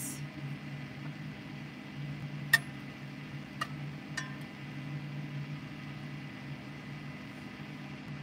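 A metal spatula stirring vegetables in a cast-iron skillet, with three sharp clinks of metal on the pan, the first about two and a half seconds in and the loudest, ringing briefly. A steady low hum runs underneath.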